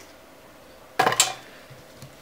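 A single brief metallic clatter about a second in, as the sheet-metal frame of an LCD panel's backlight assembly is handled.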